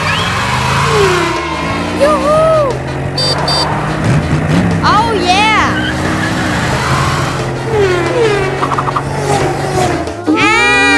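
Steady car-engine sound with background music, as a child's ride-on sports car is driven, with short high exclamations from children over it.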